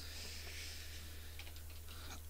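Quiet pause: a low steady hum with a few faint clicks.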